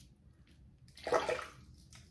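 A brief rush of water, about half a second long and starting about a second in, as the single-edge safety razor is rinsed.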